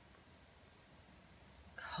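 Near silence: quiet room tone with a faint low hum, until a woman starts speaking again near the end.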